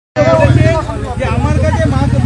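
A man speaking to reporters over a loud, steady low rumble with a fast, even pulse.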